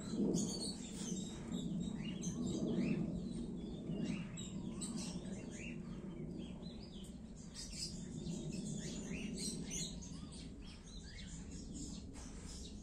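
Small birds chirping and tweeting: many short, quick chirps from several birds, over a low steady background hum.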